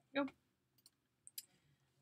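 A few faint computer mouse clicks, one pair about a second in and another shortly after, as the software view is switched.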